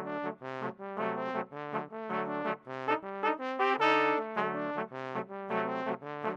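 Brass quartet of two flugelhorns and two larger low brass horns playing a rhythmic passage of short, detached chords. A longer, louder chord sounds about four seconds in.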